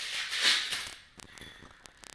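A DMoose fitness ankle strap being twisted around the foot on a shoe: a short scraping rustle of strap material, loudest about half a second in, then fading.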